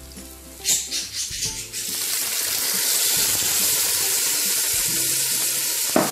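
Chopped tomatoes dropping into hot oil and onions in a large aluminium pot: a few soft knocks, then a loud, steady sizzle from about two seconds in.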